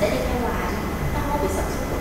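A person speaking quietly, in short phrases, over a steady low rumble.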